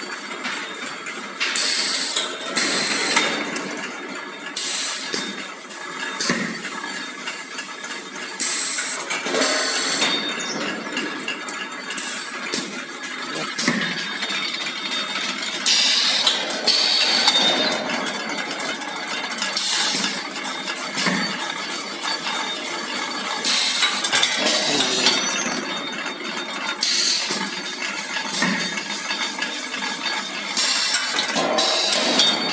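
Automatic waffle cone baking machine running: a steady mechanical clatter with metal clinks and knocks, and short bursts of hiss every few seconds.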